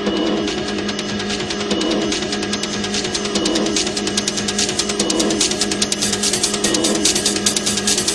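Techno music from a DJ mix. A steady low droning note runs under a phrase that loops about every second and a half. Fast, rattling high percussion ticks grow louder through the second half.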